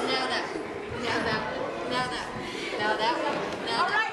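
Indistinct overlapping chatter of children's voices in a gym hall, with no single clear speaker.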